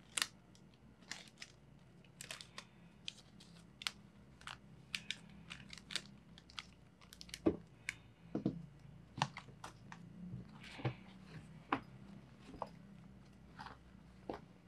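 Stacks of Philippine peso banknotes being handled and squared up on a wooden table: irregular crisp crackles, flicks and taps of the paper bills, with a few duller knocks around the middle as the bundle meets the tabletop.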